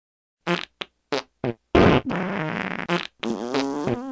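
Fart sounds cut into a rhythmic sequence: four short farts about a third of a second apart, then two long drawn-out farts with wavering pitch. The first long one is the loudest.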